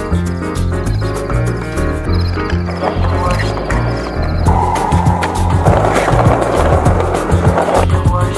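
Skateboard wheels rolling over paving tiles, with a few sharp clacks of the board, over music with a steady beat. The rolling starts about three seconds in, grows louder, and cuts off suddenly just before the end.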